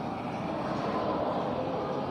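Steady, even background noise with no distinct events standing out.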